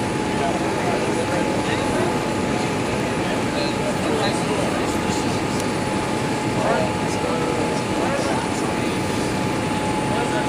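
Steady cabin noise inside a Boeing 787-8 airliner on approach: a constant rush of airflow and engine noise, with a thin steady tone running through it.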